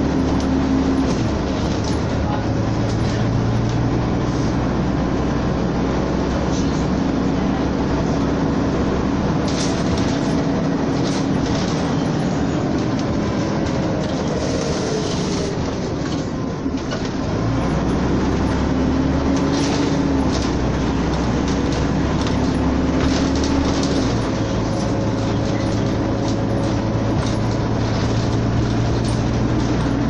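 Scania N94UD double-decker bus's diesel engine and drivetrain heard from inside the lower deck while riding: a steady drone with some rattling from the body. About halfway through the engine note falls away and then climbs again as the bus picks up speed.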